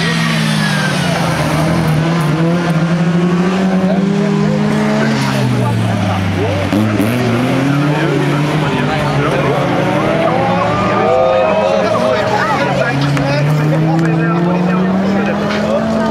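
Several Folkrace cars' engines running hard on a gravel and dirt track. The engine notes fall to a low point about six to seven seconds in and then climb again as the cars lift and accelerate.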